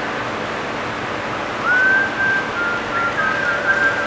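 A person whistling a few held notes of a tune, starting about one and a half seconds in, the last long note warbling, over a steady hiss.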